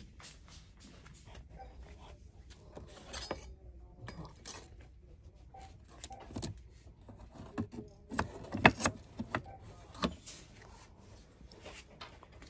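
Narrow tabletop decor signs clacking and knocking against each other as a hand flips through them in a display box. The sharp clacks come irregularly, loudest in a burst about nine seconds in, over a low steady store hum.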